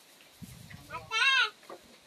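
A single short, quavering bleat about a second in, lasting about half a second, over a faint low murmur.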